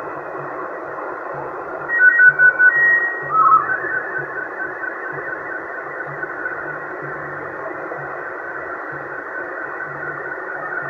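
Yaesu HF transceiver's speaker giving out 27 MHz band noise, a steady narrow hiss. About two seconds in come a few short whistling tones from other signals, louder than the hiss, and fainter tones carry on under the noise afterwards.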